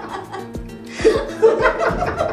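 A man and a woman laughing and chuckling together over background music. The laughter thins out briefly and picks up again about a second in.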